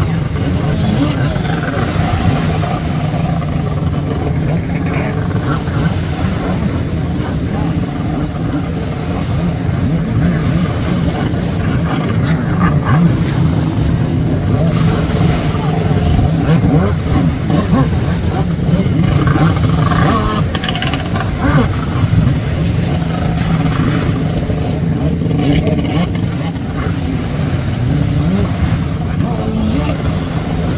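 Jet ski engine running and revving up and down as the rider turns and sprays across the water.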